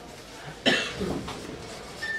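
A person coughs: a sharp cough just over half a second in, with a weaker second one right after.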